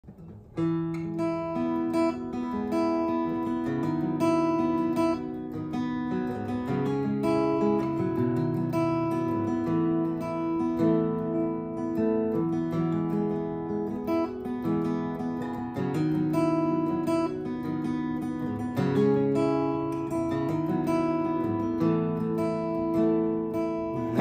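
Solo acoustic guitar playing an instrumental intro, a chord progression picked and strummed in a steady rhythm, starting about half a second in.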